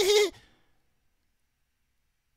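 The tail of a high, pulsing laugh on one held pitch, cutting off about a quarter second in, followed by dead silence.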